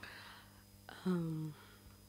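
A soft, breathy hiss of breath or whisper at a desk microphone, then a short hummed 'mm' lasting about half a second: a brief vocal sound between speakers rather than words.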